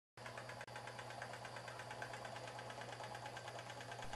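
Small homemade Stirling engine with copper end caps and a wooden crankshaft, running fast on a hot plate at about 600 rpm: a faint, quick, even clatter of its moving parts over a steady low hum.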